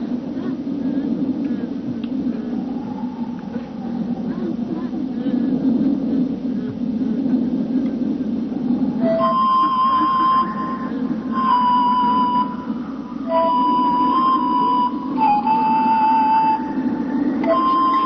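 Steady background ambience, and about halfway through a soundtrack melody enters: one melodic instrument playing long held notes that step from pitch to pitch.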